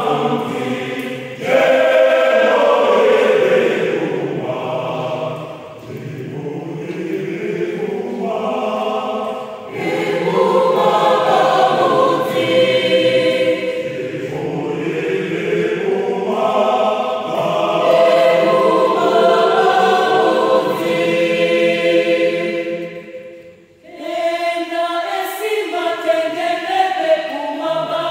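Large mixed-voice choir singing a cappella in several parts, in phrases a few seconds long separated by short breaks, with a near pause about two seconds before the end.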